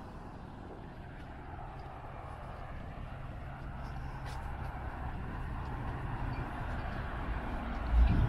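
A car driving along the street, its engine and tyre noise a low hum that grows steadily louder as it approaches.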